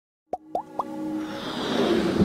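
Electronic intro sound effects: three quick pops rising in pitch, about a quarter second apart, then a rising whoosh that swells in loudness.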